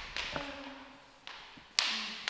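Footsteps on a hard tiled floor, a sharp step about every half second, each one trailing off in the room's echo.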